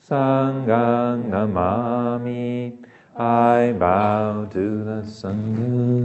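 Male voice chanting a Buddhist devotional recitation on a level monotone, long held syllables with a brief breath pause near the middle.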